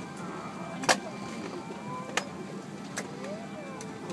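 Airliner cabin ambience at the gate: a steady low hum, with a sharp click about a second in and another just after two seconds.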